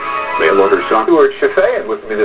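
A voice talking over background music, with the sound of an off-air TV broadcast recording.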